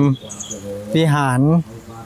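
A man speaking Thai in two short phrases. In the pause between them comes a brief high-pitched insect chirp.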